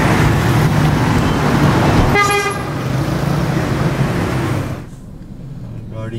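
Road traffic noise with one short car horn toot about two seconds in. Near the end the traffic noise drops away abruptly to the quieter sound inside a car.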